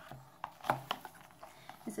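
A cardboard gift box being handled, with a few light knocks and taps from its lid and sides in the first second.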